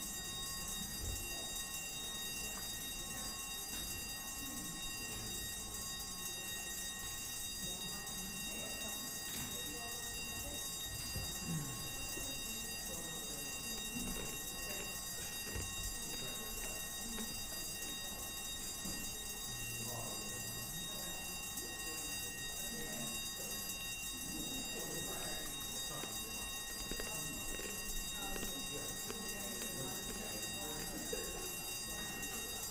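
Division bells ringing steadily, the signal that a division (a counted vote) has been called, under a murmur of voices.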